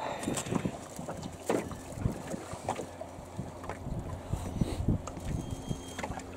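Irregular light knocks and rattles of a landing net and its frame being handled on a fishing-boat seat while a walleye is taken out of the mesh. Underneath is a steady low rumble of wind on the microphone.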